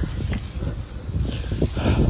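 Wind buffeting the microphone of a phone carried on a moving bicycle: a steady low rumble and rushing noise.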